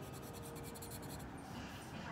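Felt-tip marker scratching quickly back and forth on paper while colouring in, a fast run of repeated strokes.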